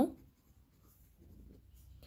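Pen writing on ruled notebook paper: a faint scratching as a short word is written.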